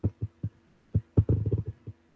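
A series of dull, low knocks: a few spaced apart in the first second, then a quick run of them in the second.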